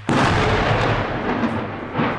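A blast from artillery shelling: a sudden loud boom right at the start, followed by a long rumble that slowly fades away.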